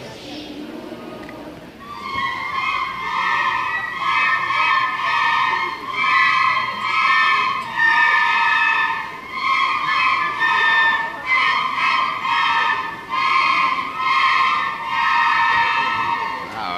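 A group of children playing a simple tune together on small handheld wind instruments: high held notes in short phrases, with brief breaks between them. The playing starts about two seconds in.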